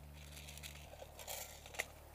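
Faint rustling of dry grass and clothing with a few light clicks as an airsoft rifle is handled, the sharpest click near the end.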